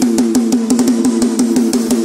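Instrumental passage of a forró song: quick, even drum strokes under a fast repeating pitched riff, with the bass dropped out.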